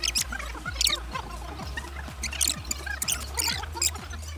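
Sped-up, high-pitched squeaky voice chatter from fast-forwarded audio, over background electronic dance music with a steady bass.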